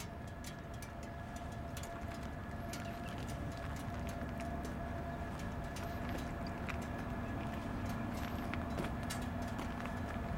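Harley-Davidson Switchback's air-cooled V-twin engine idling steadily with a loping beat, growing a little louder toward the end.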